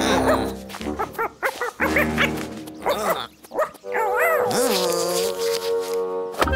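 Cartoon background music with wordless character vocal sounds: short calls that rise and fall in pitch, and one longer held sound near the end.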